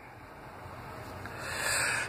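Hands brushing across a cloth-covered table as a card is set down: a soft rubbing swish that grows louder in the second half.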